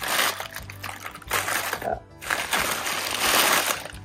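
Brown paper bag crinkling and rustling as it is grabbed and handled, in three bursts of a second or less.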